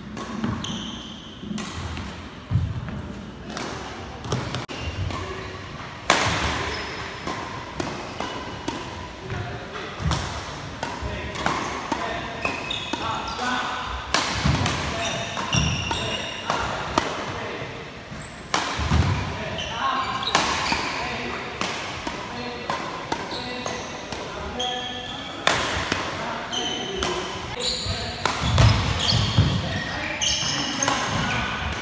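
Badminton rackets hitting shuttlecocks in rallies, a sharp crack every second or so, with sneakers squeaking and feet thudding on the wooden court.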